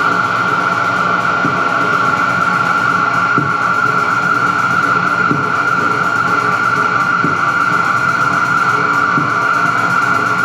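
Experimental noise music played live on electronics: a dense, unchanging drone with a strong steady high tone over a noisy wash. A faint low knock recurs about every two seconds.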